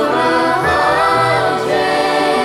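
Children's choir singing over string accompaniment, with a violin among the strings; the voices hold and glide between notes.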